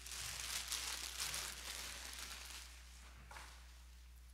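A plastic bag crinkling and rustling as it is handled, loudest over the first two seconds and then dying away, with one short rustle near the end.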